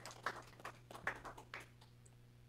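A few people clapping, the claps thinning out and stopping shortly before the end.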